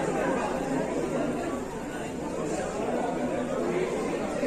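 Crowd chatter: many people talking over one another in a steady hubbub, with no single voice standing out.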